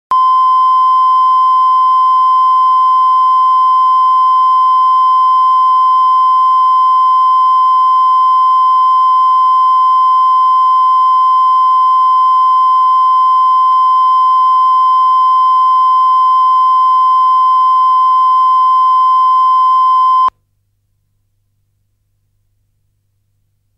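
Broadcast line-up test tone: a single steady 1 kHz beep that cuts off suddenly about twenty seconds in.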